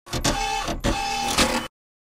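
Short mechanical-sounding burst with a steady tone running through it and three sharp accents, cutting off suddenly at about three-quarters of the way through.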